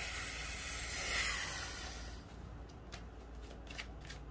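A long, breathy hiss, strongest about a second in, that fades out after about two seconds, followed by a few faint clicks.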